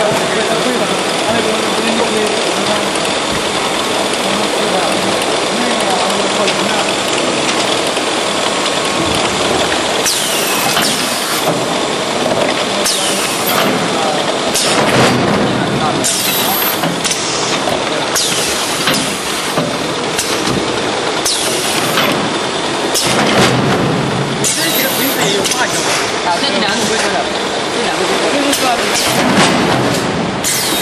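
Drop-type case packer and conveyor for 5-litre plastic jugs running, with steady loud machine noise. From about a third of the way in, short noisy bursts repeat every second or two as the packer cycles.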